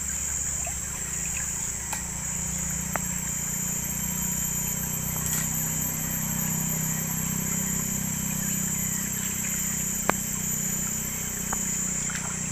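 Shallow stream water running and rippling around a person wading and working his hands in the water, under a steady high-pitched drone, with a few short sharp clicks, the loudest about ten seconds in.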